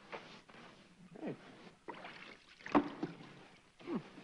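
A whitewash brush swishing in short strokes on wooden boards, with three brief falling grunts or exclamations. The loudest grunt comes a little after halfway.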